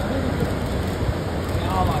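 Busy terminal hall ambience: indistinct voices over a steady low rumble, with a voice more distinct near the end.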